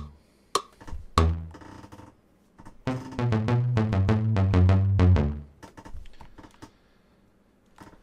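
Teenage Engineering OP-Z synth and drum loop played in fits and starts: a lone bass note, then about two and a half seconds of the pattern with bass and rapid drum ticks, cut off, followed by a few faint clicks of buttons or keys.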